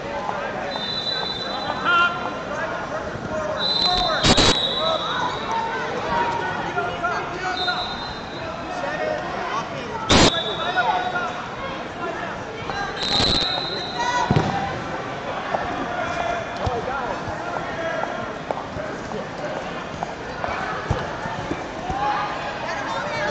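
Crowd chatter echoing in a busy wrestling gym, with referees' whistles giving several short high blasts and three sharp smacks on the mats, about 4, 10 and 13 seconds in.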